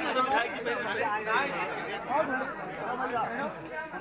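Indistinct chatter of several men's voices talking over one another in a crowd.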